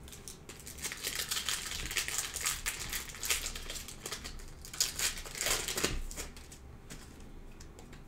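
Foil wrapper of a Panini Prizm trading-card pack crinkling and tearing as it is opened by hand, a dense crackle from about a second in until about six seconds, then quieter handling of the cards.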